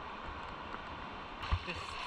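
River water flowing and lapping around a person wading chest-deep in the current, a steady rushing hiss, with a soft low bump about one and a half seconds in.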